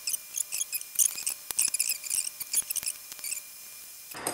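Quick, irregular small metallic clicks and taps as a small hand tool works the screws of a laptop's copper heatsink during reassembly. The clicks stop about three and a half seconds in.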